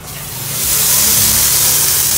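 Duck breast searing skin-side down on a hot flat-top griddle with no oil: a steady sizzle that swells up over the first half second or so as the meat settles on the hot metal.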